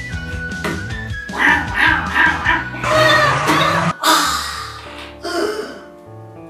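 Background music with held notes and short melodic figures, and one sharp accent about four seconds in, after which it gets quieter.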